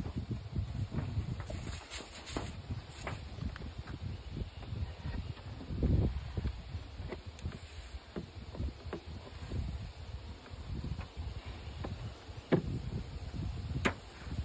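Metal-covered roof of a wooden top bar hive being set down and shifted into place: scattered knocks and scrapes of wood and sheet metal, the heaviest about six seconds in and a sharp click near the end, over a steady low rumble.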